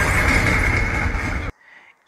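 Loud action-film soundtrack, a dense noisy mix of sound effects and music, cutting off abruptly about one and a half seconds in and leaving a short near-silent gap.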